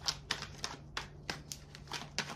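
A deck of tarot cards being handled and shuffled by hand with long nails: a run of short, sharp clicks and snaps, irregularly spaced, a few a second.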